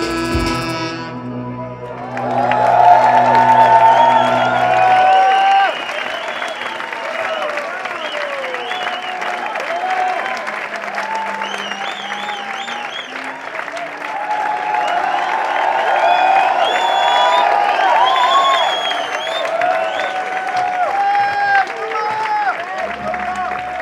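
A saxophone and synthesizer piece ends about a second in, a low synth drone lingering a few seconds more. Audience applause and cheering fill the rest, loudest at first.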